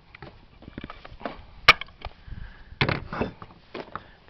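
Handling clicks and knocks from a cordless angle grinder's plastic body against a wooden table, a few short sharp strokes with the loudest a little under two seconds in. The motor is not running.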